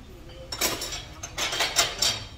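Chopsticks clicking and scraping against a small ceramic plate as rice is shovelled up, in two quick clusters of clicks about half a second and a second and a half in.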